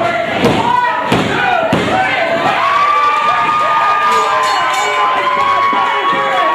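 A few heavy thuds of bodies hitting the wrestling ring in the first two seconds, then a small crowd shouting and cheering, with high voices holding long yells.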